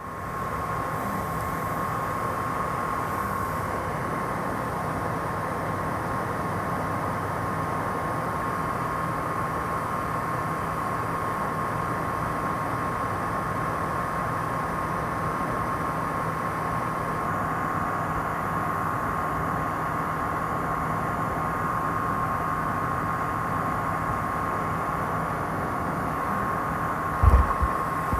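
Steady cockpit noise of a light aircraft in flight: engine and airflow as an even rush, with a constant thin tone running through it. A brief low thump comes near the end.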